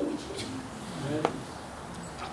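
A woman's soft, low voice: two short, drawn-out sounds, about half a second in and just after a second, much quieter than her speech around them.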